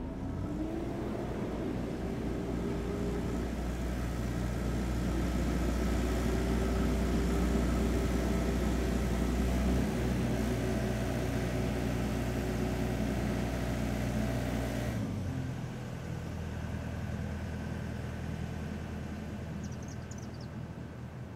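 An engine running, its pitch rising over the first few seconds and then holding steady; the upper part of the sound cuts off abruptly about 15 seconds in, leaving a lower hum.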